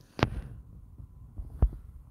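Two short, low thumps about a second and a half apart, with a faint low hum between them.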